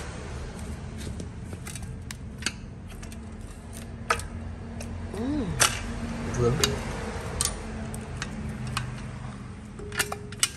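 A used Honda motorcycle engine is being worked by hand to check its gearbox. There are scattered sharp metallic clicks and clunks, about one a second, as the gears are shifted and the sprocket is turned. Underneath runs a steady low background hum.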